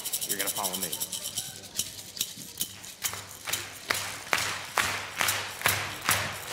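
Hand rattle shaken in a quick roll, then settling into a steady beat of about two sharp shakes a second, setting the pulse for a Cherokee social dance song.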